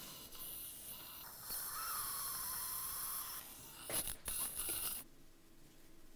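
Faint sounds of oral surgery: a steady hiss, a few clicks from instruments about four seconds in, then the sound cuts off abruptly about five seconds in.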